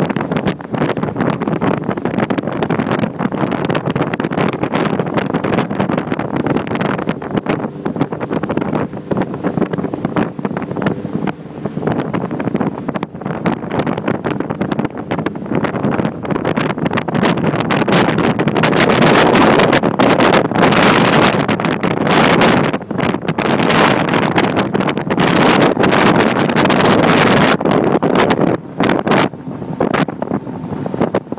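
Wind buffeting the microphone on a ski boat under way, over the steady run of the boat's engine and the rush of its wake; the buffeting grows louder in the second half.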